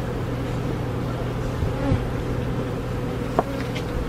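Honeybee colony buzzing steadily from an opened hive that is being smoked. The bees are unsettled, described as not seeming happy. A single short click sounds about three and a half seconds in.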